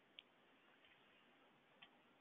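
Near silence with two faint single clicks from a computer mouse, one just after the start and one near the end.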